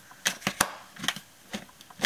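Dress My Craft plastic border punch being pressed down on the edge of a card: several sharp plastic clicks and clunks spread through the two seconds, the loudest a little past half a second in. The punch is thought not to have cut through the card.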